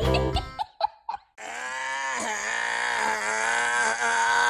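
Music stops in the first half second. About a second and a half in, a baby starts a long, drawn-out "aaaa" vocalisation that wavers in pitch and is still going at the end.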